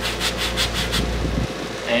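The end of a wooden spindle worked against a foam sanding sponge under pressure to round it over: a fast, even rasping at about seven strokes a second that stops about a second in.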